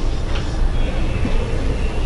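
A steady low rumble of background noise, with faint scratchy strokes of a marker writing on a whiteboard in the first second or so.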